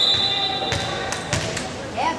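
Referee's whistle blown once, a single steady high tone that dies away about a second in, then two sharp smacks of a volleyball being hit, over the chatter of a gym crowd.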